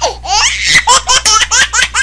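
High-pitched laughter in quick pulses, about six a second, over a steady low hum.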